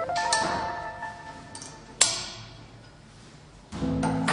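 Background music: held notes fade out, a single sharp click sounds about two seconds in, and the music comes back in strongly near the end.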